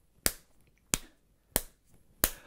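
A fist striking an open palm in a steady beat, three sharp slaps about two-thirds of a second apart, keeping time as a count-in for a song.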